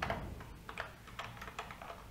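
Computer keyboard typing: a quick run of faint keystrokes as a short string is entered.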